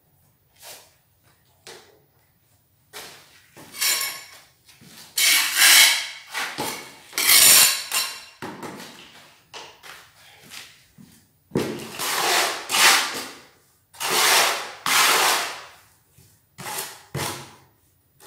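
A series of rough scraping strokes, each about a second long with short gaps between them, loudest in the middle and later part.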